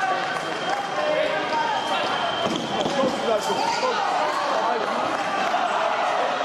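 Many overlapping, indistinct voices in a large, echoing hall, with occasional light knocks and thuds mixed in.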